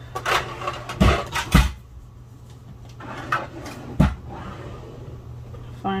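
Several dull knocks and bumps, as of objects being handled and set down on a tabletop, in the first two seconds and once more about four seconds in, over a steady low hum.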